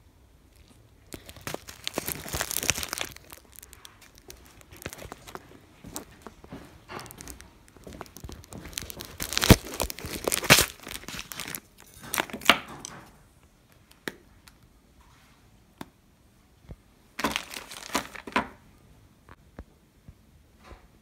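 Paper tea bags crinkling and rustling as they are handled, in several irregular bursts, loudest about halfway through.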